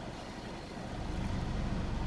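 Low, steady motor-vehicle rumble heard from inside a car, growing louder about a second in.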